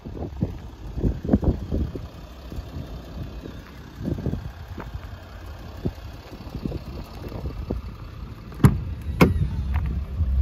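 Wind buffeting the microphone in uneven low gusts, then two sharp clicks near the end as a car's rear door handle and latch are pulled and the door opens.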